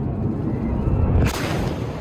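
Fighter jet passing low overhead: a loud, deep rumbling roar that swells into a harsher full-range rush about a second and a half in.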